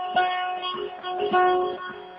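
Bağlama (saz) playing a short instrumental run of plucked, ringing notes in a Turkish folk song.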